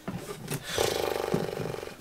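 A woman's long, strained groan of frustration, starting a little under a second in and held for about a second, after a short breath.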